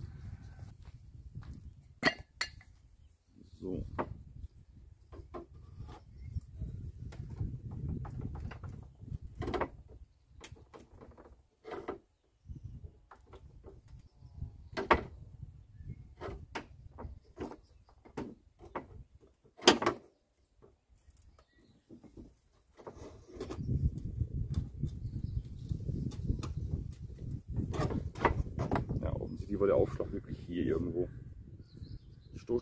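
Scattered clicks and knocks from a steel pry bar levering a dented Volvo V70 front wing back out against a wooden wedge, as the sheet metal is pushed and the tools shift. The sharpest knock comes about two-thirds of the way through. Stretches of low rumble run underneath.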